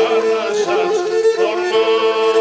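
A man singing a traditional Pontic song in full voice, with ornamented turns in the melody, accompanied by the bowed Pontic lyra (kemenche) holding sustained notes beneath him.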